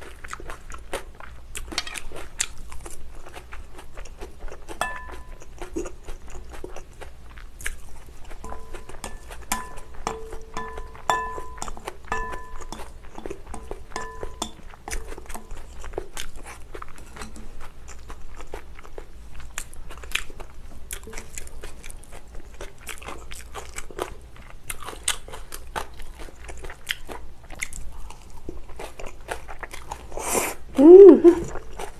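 Close-miked eating of spicy bibim noodles (somen and Chinese glass noodles): steady chewing with crunchy bites, and many small clicks and taps of chopsticks against a glass bowl.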